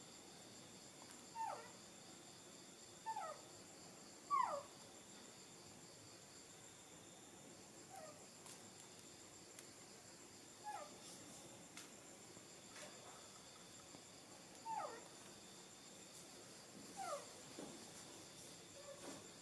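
Baby macaque giving short, thin cries that each fall quickly in pitch, about seven of them spread through the stretch, the loudest a few seconds in.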